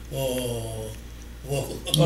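A man's speaking voice drawing out one long, level syllable in a slowly falling pitch, then pausing briefly before he goes on talking.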